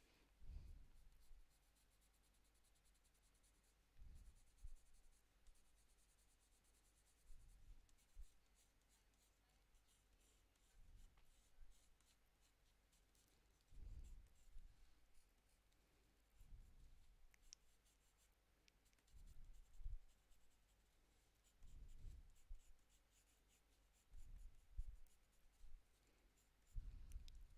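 Faint strokes of a Prismacolor Premier coloured pencil over toned paper, in short bouts every second or two as the hair is shaded.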